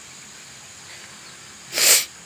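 A person's short, loud breath close to the microphone near the end, a hissing puff that rises and falls within about a third of a second, over a faint steady high-pitched outdoor background.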